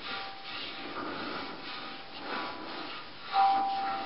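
A water gong, a metal water bowl played by rubbing it with the hands, drawing out faint steady humming tones. A clearer ringing tone with overtones swells up a little past three seconds in.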